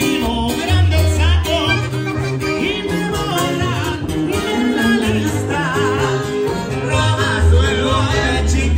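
Live Latin band music with a singer's wavering melody over a deep, sustained sousaphone bass line.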